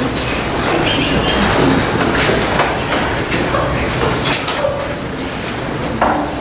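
Indistinct murmur of people talking and moving about in a meeting room, with a few scattered knocks.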